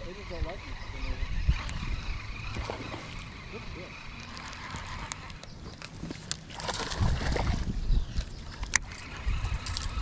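Wind on the microphone and water lapping against a boat hull, with a stronger gust late on and a couple of sharp clicks near the end.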